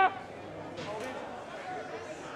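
Indistinct voices and calls from players and spectators at an outdoor sports ground, heard faintly over background noise.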